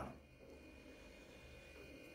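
Near silence: faint room tone with a low hum, in a pause between spoken sentences.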